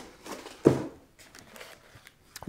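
Cardboard and plastic packaging being handled, with faint rustling and one short knock about a second in.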